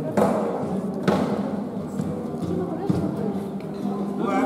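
Music with held, sustained notes, broken by a sharp knock about a quarter second in, another about a second in and a lighter one near the end.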